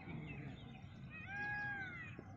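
One drawn-out animal cry lasting about a second, starting a little past the middle, its pitch rising slightly and falling away at the end, over faint bird chirping.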